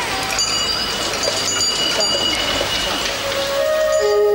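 Busy street ambience: a bed of crowd chatter and bustle, with short bicycle-bell rings repeated several times. A soft flute melody fades in near the end.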